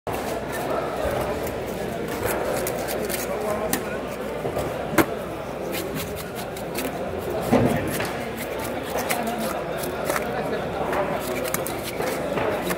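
Indistinct background voices, with scattered sharp clicks and knocks from the knife and cutting board; the loudest click comes about five seconds in and a heavier knock about two and a half seconds later.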